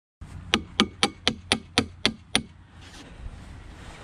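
A hammer tapping a metal landscape spike down through an edging block into the ground: eight quick, evenly spaced strikes, about four a second, that stop shortly after the halfway point.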